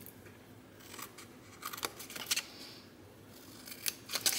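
Small scissors making a few short, sharp snips into cardstock, cutting along the score lines of a box lid. The snips are irregularly spaced and start about a second in.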